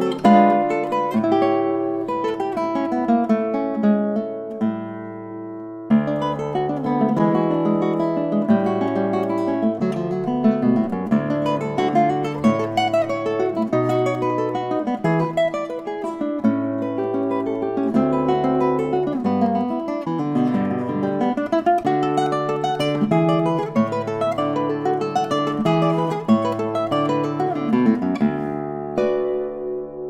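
Solo nylon-string classical guitar playing a fast, energetic choro in quick runs of plucked notes, with a short held chord about five seconds in. It closes on a final chord left ringing near the end.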